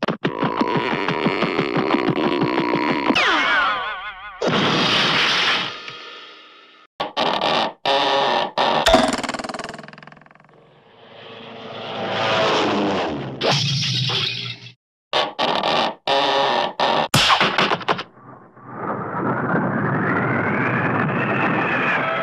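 Edited-in sound effects and snippets of music cut abruptly one after another, with scraping and crashing, breaking sounds, several sudden sharp hits and pitch glides, ending in a long rising-then-falling tone.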